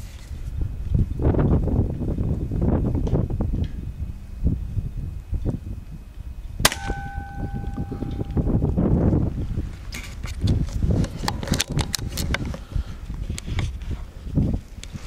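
A single shot from a .177 Daystate Air Ranger pre-charged air rifle about halfway through: a sharp crack followed by a ringing tone of about a second. Rumbling handling noise runs throughout, and a run of clicks and crackles from the undergrowth comes after the shot.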